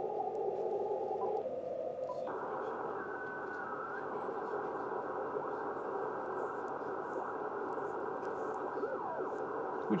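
Icom IC-7300 HF transceiver in CW mode giving band hiss through its speaker, narrowed by the receive filter, as the tuning dial sweeps across the 20 m CW segment with no Morse signal found. About two seconds in the filter setting changes and the hiss becomes wider and brighter. Faint tones glide past briefly as the dial moves.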